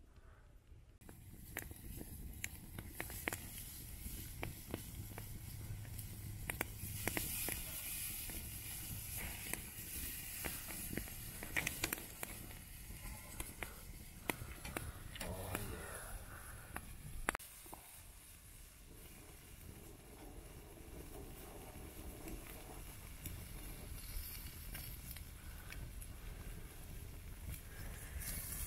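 Low outdoor rumble with scattered clicks and light scrapes of a metal spatula and tongs on a wire grill grate as fish fillets are turned over a wood fire.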